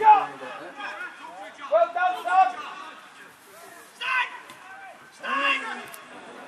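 Spectators' voices: men talking and calling out with indistinct words, with a couple of louder calls about four and five and a half seconds in.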